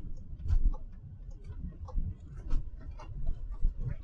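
Low rumble of a moving vehicle on a road, with frequent irregular clicks and knocks over it.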